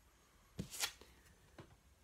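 Tarot cards being handled as the next card is drawn: two quick, faint card rustles a little over half a second in, and a softer one near the end.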